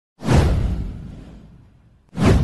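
A whoosh sound effect with a deep booming low end, of the kind laid over an intro logo animation. It hits suddenly just after the start and dies away over about a second and a half.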